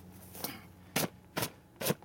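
A hand brushing and rubbing against the nylon fabric of a backpack: three short scuffing strokes about half a second apart, starting about a second in.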